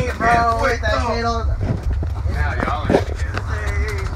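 Voices talking over the steady low rumble of a moving school bus.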